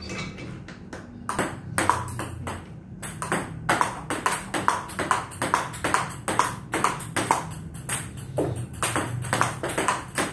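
Table tennis rally: the ball clicking off the table and the rubber paddles in a quick, steady rhythm of about three hits a second, starting about a second in.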